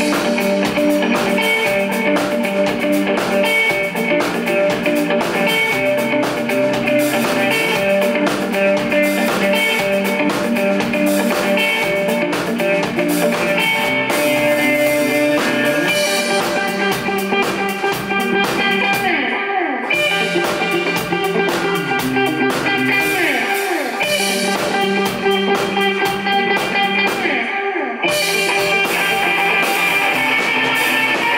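Live indie rock band playing: a Telecaster-style electric guitar over a drum kit, with the guitar part changing about halfway through.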